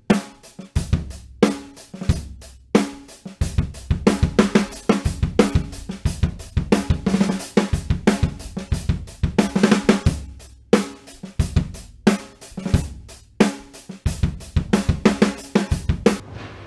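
Drum kit played in grooves and fills around a Ludwig LM402 Supraphonic 14 x 6.5 snare drum with a seamless chrome-plated aluminium shell, with hi-hat, cymbals and bass drum. The strikes come thick and fast, with a few short breaks between phrases.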